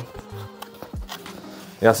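A cardboard Hot Wheels collector box being opened by hand: faint scraping and a few light taps as the inner carton slides out of its sleeve. A man starts speaking near the end.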